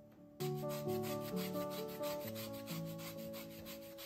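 An orange's peel being scraped over a flat metal hand grater to zest it, in quick, even strokes of about five a second that start suddenly about half a second in.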